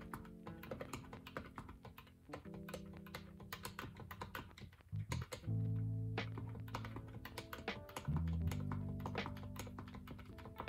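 Calculator keys tapped in quick, irregular succession while a long sum is entered, over background music with sustained low notes.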